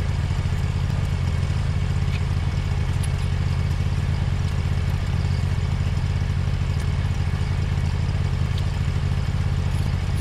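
Ventrac compact tractor's engine idling steadily, an even low-pitched hum that holds unchanged throughout.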